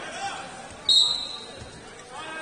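Referee's whistle: one short, high, sharp blast about a second in, trailing off in the gym's echo, over background chatter.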